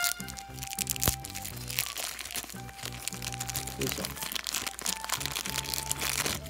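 Thin clear plastic bag around a small capsule-toy figure crinkling and crackling as it is handled and unwrapped by hand, with a sharp click about a second in, over steady background music.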